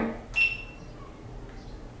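A GoPro camera's short electronic beep, one steady high tone about half a second long starting about a third of a second in: the camera confirming a voice command to start recording. Low room tone follows.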